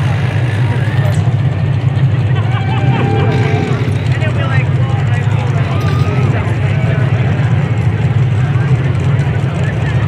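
Engines of several front-wheel-drive stock cars running together in a bump-and-run race, a loud steady low drone, with faint indistinct voices over it.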